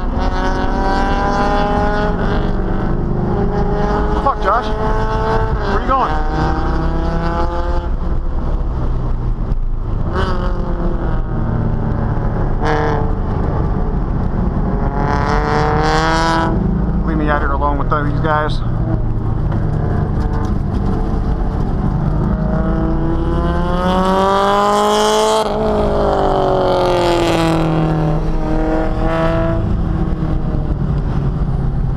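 C5 Corvette's 5.7-litre V8 heard from inside the cabin while lapping a track, revs climbing under acceleration and falling away on lifts and braking, over and over. The highest, loudest climb comes about 24 seconds in, then the revs drop sharply.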